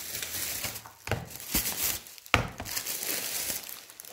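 Plastic shopping bag rustling and crinkling as groceries are pulled out of it, with a sharp knock a little past halfway.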